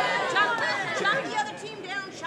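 Speech only: people talking, with background chatter.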